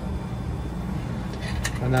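Steady low hum of laboratory machinery and ventilation, with a few faint clicks about one and a half seconds in as tubing fittings are handled.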